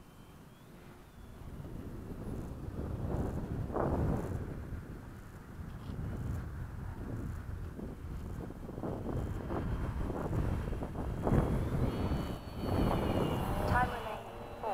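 Wind buffeting the microphone in uneven gusts, with the faint high whine of a model airplane's electric motor in the second half.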